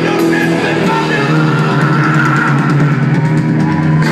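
Live hard rock band playing loud: electric guitars, bass and drums with cymbals, heard from among the crowd.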